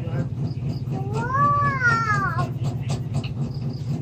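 A single long call, about a second and a half, rising and then falling in pitch, heard over a steady low hum and faint ticks of colored-pencil strokes.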